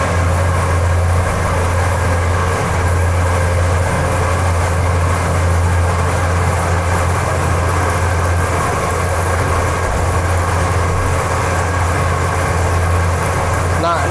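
Feed mixer running with a loud, steady low hum as it mixes a batch of ground pig feed.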